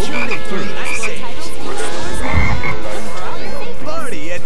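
Soundtracks of several children's DVD openings playing over one another: a jumble of cartoon voices, music and tones, with cartoon frogs croaking. A low thump about two and a half seconds in.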